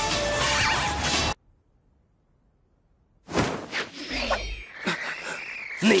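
Anime fight sound effects: a loud rushing whoosh of a spinning chakra shield knocking away a hail of kunai, over music, which cuts off suddenly about a second in. After about two seconds of near silence, further effects with gliding tones come in.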